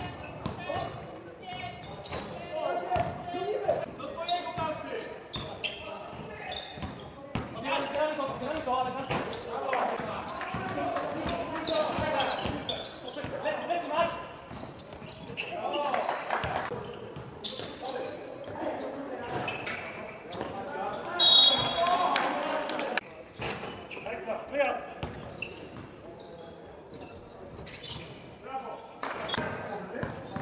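Basketball game sounds in a large sports hall: players' voices calling out over a ball bouncing on the court floor, with a short high squeak about two-thirds of the way through.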